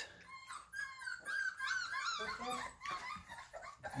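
Bull Terrier puppies whining and yelping in a string of short, high-pitched rising-and-falling cries: hungry puppies eager for feeding time.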